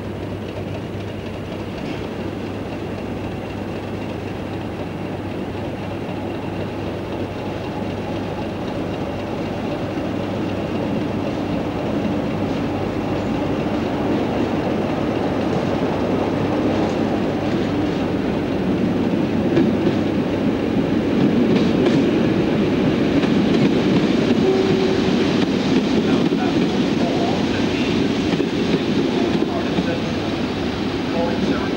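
A passenger train rolling through a station, its wheels clacking over rail joints, growing steadily louder through the second half. A steady low hum runs underneath.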